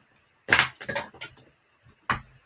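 A quick run of clicks and taps on a computer keyboard, sharpest at first and fading over about a second, with a couple of faint ticks near the end.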